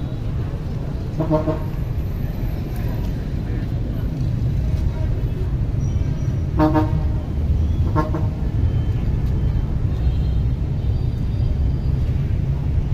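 Vehicle horns give short toots, once about a second in and twice more around six and a half and eight seconds, over a steady low rumble of engines and traffic at a busy bus station.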